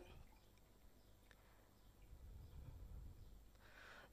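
Near silence: faint room tone with a soft low rumble.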